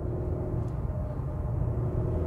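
Inside the cabin of a Chery Tiggo 8 Pro on the move: a steady low rumble of road and engine noise from its 1.6-litre turbo engine and tyres, with a faint steady engine hum above it.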